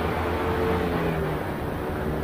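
Paramotor's two-stroke Moster 185 engine running steadily in flight, with wind rushing on the helmet camera and faint background music beneath.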